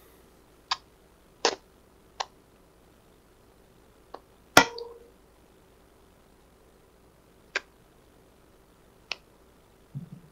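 Tarot cards being handled and laid down: about seven sharp, irregular clicks and taps of the cards, the loudest about halfway through with a short ring after it.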